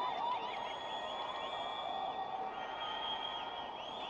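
Faint ambient background music or sound-design bed: steady high tones with soft, slowly arching pitch glides and no beat.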